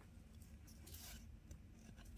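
Near silence, with only the faint rustle of paper trading cards being slid from one card to the next in the hands.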